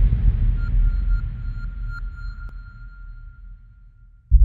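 Logo-intro sound effect dying away: a deep low rumble decays steadily while a thin high ringing tone, dotted with a few short pings, fades out over about four seconds.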